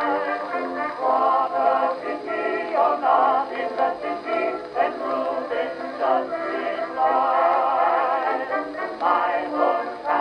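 A 1920 Victor acoustically recorded 78 rpm record playing on a horn gramophone with a Victor Orthophonic soundbox and a steel needle. Male voices sing a popular song with accompaniment, continuously, in a narrow, mid-range sound.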